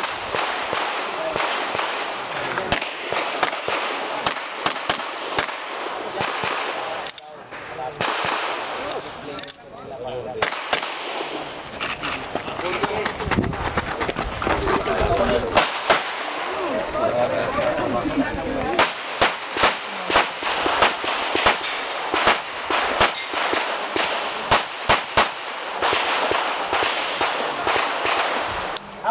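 Handgun shots fired in strings during a practical shooting course of fire. The sharp cracks come thick and fast in the last third.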